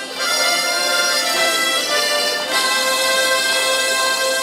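Harmonica ensemble playing in chords, moving through a few chord changes and then holding one long sustained chord from about halfway in: the closing chord of the piece.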